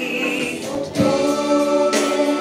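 Music with children singing. A new phrase of long held notes begins about a second in.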